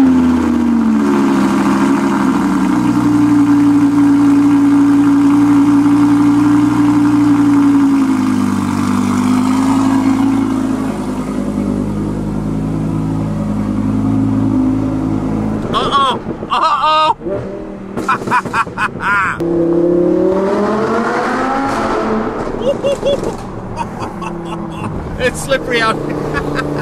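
Audi R8 V10 Plus 5.2-litre V10 cold start: the engine flares up as it catches, then settles into a steady fast cold idle that eases lower after several seconds. After about 16 seconds the engine is heard under way, rising in pitch as the car accelerates.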